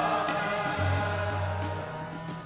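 Sikh kirtan: harmonium chords held steady under group singing that trails off early on, with jori drum strokes keeping a quick, even beat.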